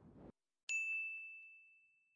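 The fading tail of a swish cuts off suddenly. Then, about two-thirds of a second in, a single bright, bell-like chime rings out and fades over about a second.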